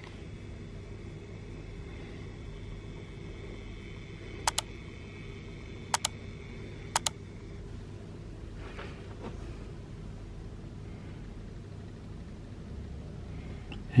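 Steady low rumble of airport and room ambience heard from indoors, with no clear aircraft passing. About midway come three quick double clicks a second or so apart: the click effects of an on-screen like, subscribe and bell-button animation.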